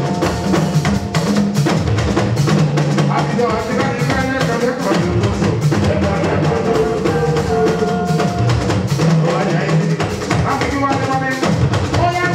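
Live Fuji band music: drums and percussion keep a steady, driving beat under melodic lines.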